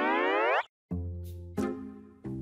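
A comedic edited-in sound effect: a rising, boing-like glide that cuts off about half a second in. After a short gap come two sustained music notes, each fading.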